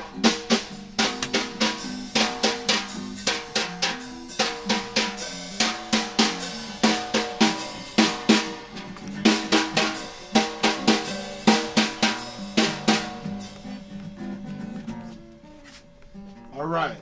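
Drums played in a fast, steady beat of snare and bass drum hits, which thins out and stops a few seconds before the end.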